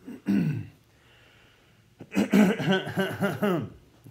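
A man clears his throat briefly, then coughs several times in a row for well over a second in the second half.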